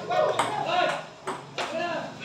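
Table tennis rally: sharp clicks of the celluloid ball striking paddles and the table, roughly every half second, with people's voices talking over it.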